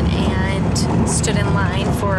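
Passenger train running, a steady low rumble heard from inside the carriage, under a woman's voice talking.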